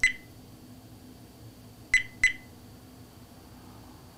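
VIOFO A119 Mini 2 dash cam beeping in response to the "Video stop" voice command as it stops recording: one short beep, then two quick beeps about two seconds in.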